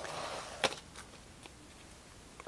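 Trading cards handled by hand: a soft sliding rustle as they are gathered up, a light tap about two-thirds of a second in and a fainter one at about a second.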